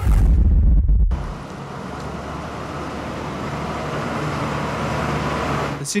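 A brief whoosh with a deep bass hit, then, about a second in, the diesel engine of a wheel loader running steadily with a low hum.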